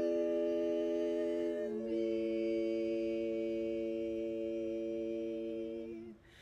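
Women's barbershop quartet singing a cappella: a soft, held four-part chord that moves to a new held chord just under two seconds in, then stops right at the end.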